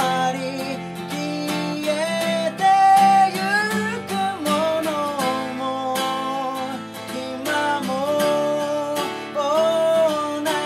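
A man singing a Japanese song to his own strummed acoustic guitar, steady strumming under a flowing vocal melody.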